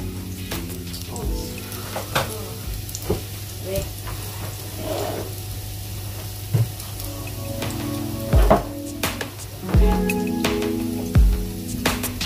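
Chopped garlic frying in hot oil in a pot, a steady sizzle with scattered crackles and pops as it turns golden brown.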